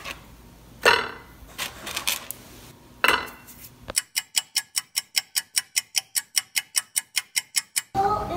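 A few knocks and scrapes as pizza slices are handled in a cardboard pizza box. About halfway through, this gives way to a rapid, perfectly even ticking, about six ticks a second, like a clock-ticking sound effect.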